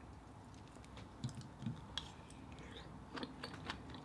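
Faint, scattered light clicks and taps of food and a spoon being handled at the table, over a glass bowl of mussels in butter sauce.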